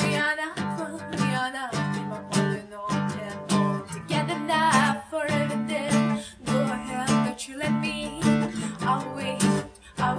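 Acoustic guitar played in a steady rhythm, accompanying a woman's singing voice.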